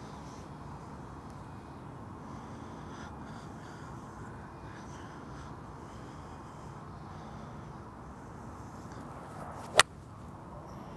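A golf ball struck once with a 4-iron near the end: a single sharp, loud click at impact. Before it there is only a steady, faint outdoor background hiss.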